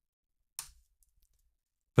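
Near silence broken about half a second in by one short click, a key press on a computer keyboard, followed by a few faint ticks.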